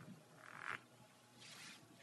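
Near silence with two faint, brief breaths, the second one higher and just before the voice returns.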